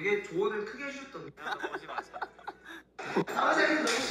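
People talking and chuckling, with a burst of laughter near the end.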